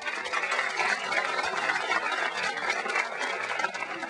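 Audience clapping: a steady, even sound of many hands applauding after a line in a speech.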